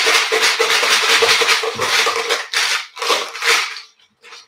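Numbered drawing chips shaken hard in a container: a loud, fast rattle that breaks into a few separate shakes near the end and then stops.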